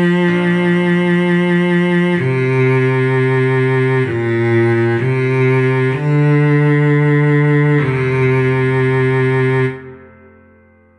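Cello playing a slow melody of held, bowed notes, each lasting about one to two seconds, before stopping abruptly near the end.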